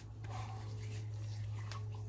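A man's low, steady closed-mouth hum, one held note.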